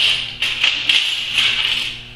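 Cut-off steel knife blades and silverware pieces clinking against each other and the workbench as they are picked up by hand: a few light metallic clinks with a bright ring.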